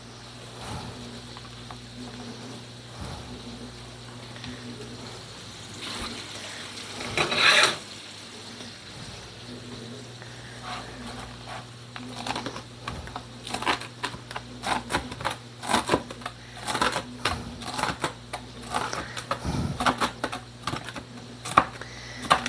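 Kitchen knife chopping crisp-cooked bacon on a plastic cutting board: quick, irregular taps through the second half. A brief louder burst of noise comes about seven seconds in.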